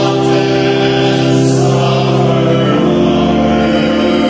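A hymn: an organ holds sustained chords, moving to a new chord about three quarters of the way through, with voices singing along.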